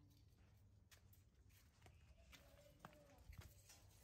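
Near silence, with a few faint vocal sounds and light clicks.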